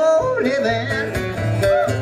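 Live acoustic performance: a man's voice sings a sliding, melismatic line over an acoustic guitar.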